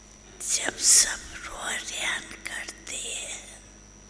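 A woman speaking into a microphone, with strong hissing s-sounds. It starts about half a second in and stops near the end.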